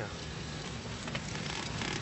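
Police patrol car driving, heard from inside the cabin: a steady rumble of engine and road noise with a hiss over it.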